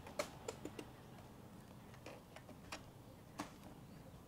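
Scattered light clicks at an uneven pace, about seven in four seconds, over faint room hiss; the sharpest click comes just after the start.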